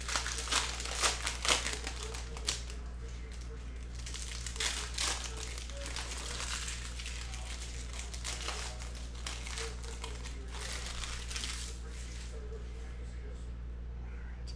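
Cellophane wrapper of a trading-card cello pack being torn open and crinkled by hand, an irregular run of crackling that is busiest in the first couple of seconds, over a steady low hum.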